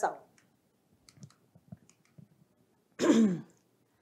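A few faint clicks, then about three seconds in a woman's brief throat-clearing sound that falls in pitch.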